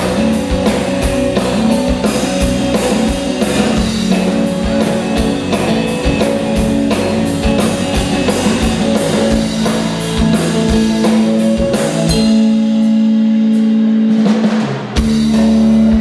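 Live blues-rock band playing an instrumental passage: electric guitar, electric bass and drum kit. Near the end the drums drop out for about three seconds, leaving held guitar and bass notes, then come back in.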